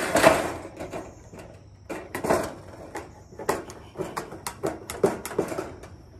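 Tin snips cutting a round outlet hole in the bottom of a sheet-metal gutter. There is a loud crunch as the blades are forced through at the start, then a run of sharp, irregular snip clicks as the hole is cut stroke by stroke.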